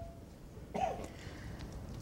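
A short voiced throat noise with a falling pitch about a second in, against the low hum of a quiet lecture room.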